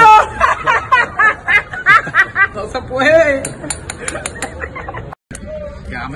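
A woman laughing and exclaiming in quick, rapid bursts, with other voices around her. The sound cuts out abruptly for an instant about five seconds in.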